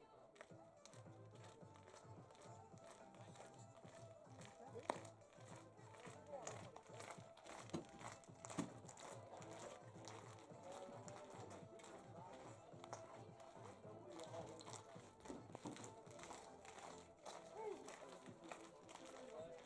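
Faint, distant voices and music, with a few sharp clicks, the loudest about five seconds in.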